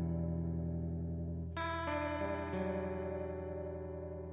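Clean electric guitar, a Fender Telecaster, through an Electro-Harmonix Polychorus in flanger mode into Fender Deluxe Reverb amps: a chord rings and fades, then new notes are struck about a second and a half in, change pitch a couple of times and are left to ring out, with a wavering flange sweep on the sustain.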